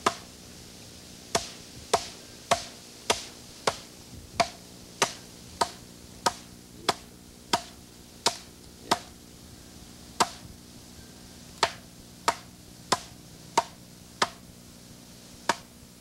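The back of an axe pounding a peeled black ash log in steady sharp blows, about one every 0.6 s, with one short pause a little past the middle. The pounding crushes the soft wood between the growth rings so that the rings lift away as basket splints.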